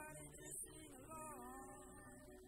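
A school show choir singing faintly, one voice carrying a melody that bends and glides over held lower notes.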